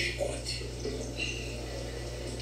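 Faint film dialogue played through a television's speaker, recorded off the set in a small room, with a steady low hum beneath it.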